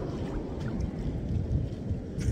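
Wind blowing across the phone's microphone at the seashore: a steady, uneven low rumble.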